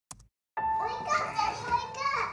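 A computer mouse click, then about half a second in a home video starts playing: a young child's voice chattering, with a steady high tone underneath.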